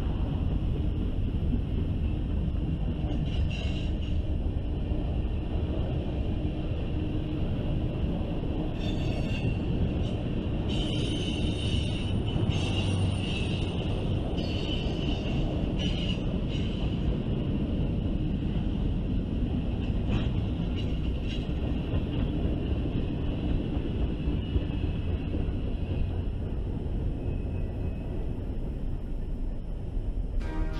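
Freight cars, covered hoppers and tank cars, rolling past with a steady low rumble and clatter of wheels on rail. A high-pitched squeal comes and goes over it and is strongest from about ten to sixteen seconds in. The rumble eases slightly near the end as the last cars go by.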